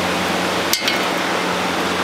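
A pencil set down on a steel diamond-plate sheet: one short, sharp clink about three-quarters of a second in, over a steady hiss and low hum.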